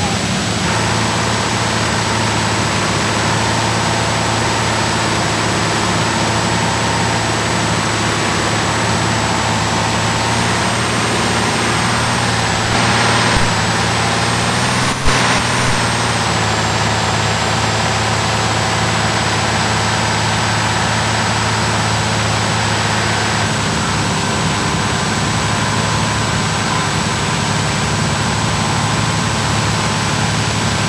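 Fire engines running steadily at a fire scene, a constant engine drone under heavy tape hiss. A short louder patch comes about 13 seconds in and a single sharp click about 15 seconds in.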